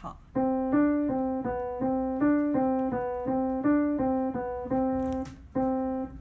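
Yamaha piano playing a simple beginner's tune, even notes that rock back and forth between two neighbouring pitches at about three a second, ending on one held note.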